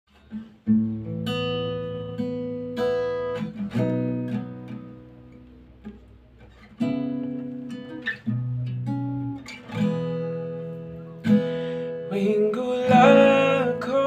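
Acoustic guitar playing an unhurried intro, chords plucked every second or two and left to ring and fade. A voice begins singing over it near the end.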